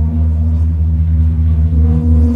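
Ambient electronic music played live from a laptop and electronic gear: a deep, steady bass drone under held tones, with no beat.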